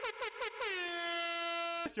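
Air horn sound effect: a quick run of short blasts, about six a second, followed by one long held blast that cuts off abruptly just before the end.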